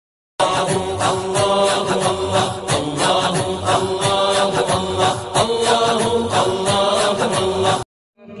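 Intro track of chanted vocal music, starting about half a second in and cutting off suddenly just before the end.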